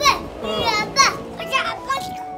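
A young child's high-pitched voice in about four short calls that slide up and down in pitch, over background music.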